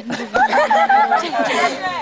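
People talking, with indistinct chatter.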